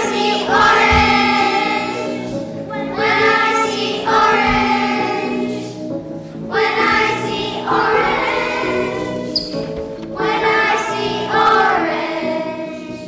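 A group of young children singing together with musical accompaniment, in phrases about three to four seconds apart.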